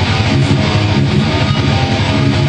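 Heavily distorted electric guitar playing a fast, low death-metal riff with rapid, evenly repeated picked notes.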